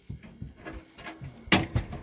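A single sharp knock about one and a half seconds in, right before a man begins to speak.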